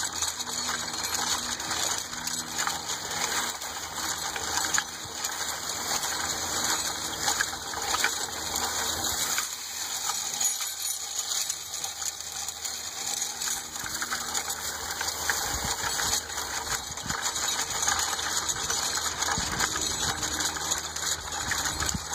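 Steel chain harrow dragged over pasture ground by a horse, its linked tines rattling and clinking continuously as it breaks up manure and matted grass.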